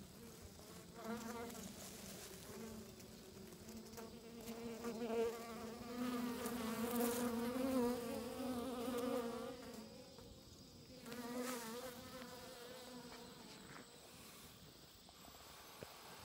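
Honeybees buzzing in flight close to the microphone, a wavering hum that swells and fades as bees pass, loudest in the middle, dropping away about ten seconds in and returning briefly.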